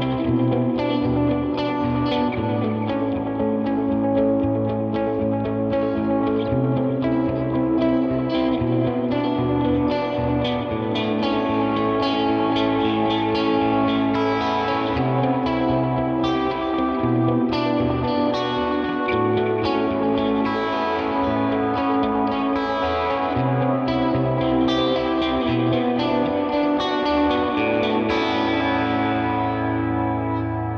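Clean Fender Stratocaster electric guitar played through the Neural DSP Tone King Imperial MKII amp plugin, set for clean headroom, with delay and reverb: held notes and chords ring on and overlap in a wash of echoes.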